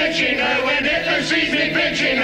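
A crowd of men and women singing a song together, with piano accompaniment.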